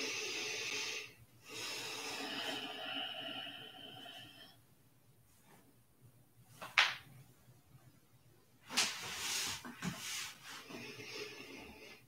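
A person breathing slowly and audibly, each breath lasting a couple of seconds with short pauses between, during a held yin yoga pose. There is one brief sharp sound about seven seconds in, the loudest moment.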